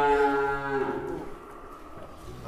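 A large bull mooing: one long call that falls slightly in pitch and tails off about a second in.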